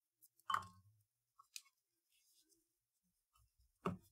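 Hands handling cardstock and a roll of tape on a cutting mat: a soft knock about half a second in, a tiny click, and a sharp tap just before the end, with quiet between.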